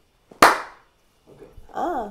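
A single sharp clap-like smack with a short ring in a small room, followed about a second later by a brief wordless vocal sound from a woman, her pitch sliding up and then down.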